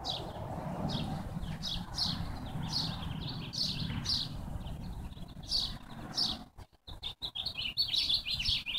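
Small birds chirping, short high notes about twice a second over a low rumble, quickening into a rapid run of chirps near the end.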